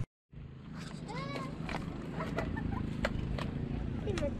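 Faint voices over a low steady outdoor background, with several short, sharp clicks scattered through it.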